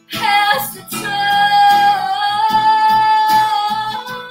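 A woman singing to her own acoustic guitar: a short vocal phrase, then one long held note from about a second in, with the guitar strummed beneath it.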